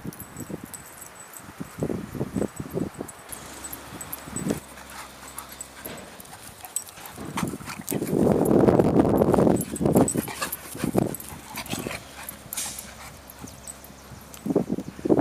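A Portuguese Water Dog and a Labrador retriever playing rough together, with irregular dog noises and scuffling; the loudest stretch comes about eight seconds in and lasts over a second.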